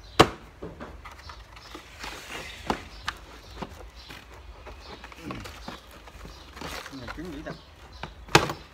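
Plastic power-tool attachments being handled in a hard plastic carrying case: scattered clicks and knocks, with a sharp knock just after the start and several lighter ones a few seconds in.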